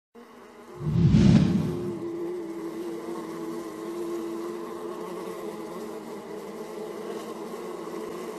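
Steady buzzing-insect sound effect, a level hum with many overtones, accompanying an animated bug logo. A short, loud, low-pitched burst comes about a second in, and the buzz holds steady after it.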